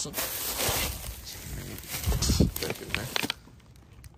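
Thin plastic bags rustling and crinkling as gloved hands handle bagged produce, loudest in the first second, with a few short handling knocks and a brief louder burst a little past two seconds.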